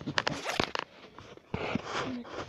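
Handling noise from a camera or phone being set in place by hand: a run of sharp clicks and knocks, then a short rubbing rustle near the end.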